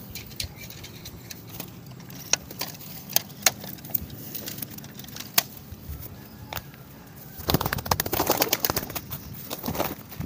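Pigeons at close range: scattered sharp clicks and soft sounds, then about two seconds of wing flapping in a rapid flurry a little past the middle.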